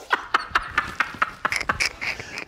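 Two men laughing hard together in rapid, breathy bursts.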